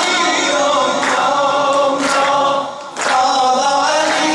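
Maddahi, Shia devotional singing: unaccompanied voices singing a wavering, ornamented melody. The singing dips briefly just before three seconds in, then carries on.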